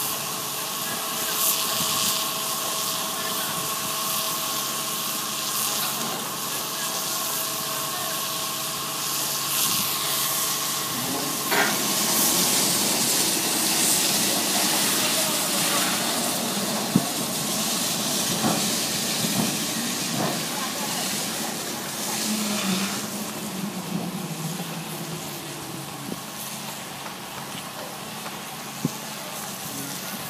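Wooden ship's launching cradle sliding down the slipway rails: a steady, loud hiss and rumble that swells about twelve seconds in, with a falling tone near the end.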